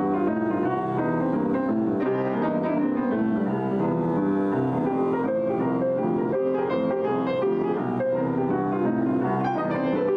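Two grand pianos played together, one a white-painted Steinway, in an unrehearsed jam. Notes run on without a break.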